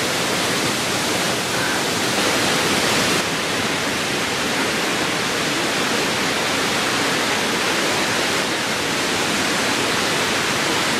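Steady rush of falling water from the cascading Triberg Waterfalls, an even hiss with no let-up, shifting slightly in tone about three seconds in.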